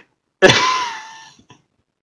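A single cough-like burst from a person about half a second in, sudden and then trailing off over about a second.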